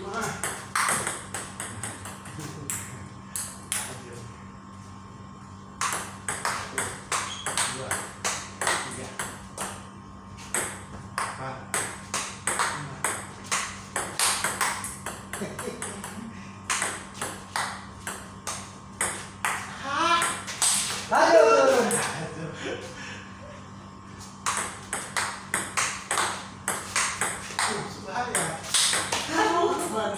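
Table tennis ball struck back and forth by two paddles and bouncing on the table in quick runs of sharp clicks. Several rallies are separated by short pauses between points.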